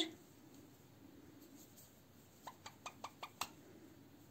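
Near silence, broken in the middle by a quick run of about six faint, sharp clicks from the needle and thread being handled at the lace edge.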